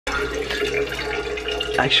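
Water running from a tap into a container as it is being filled, a steady pouring sound; a man's voice starts near the end.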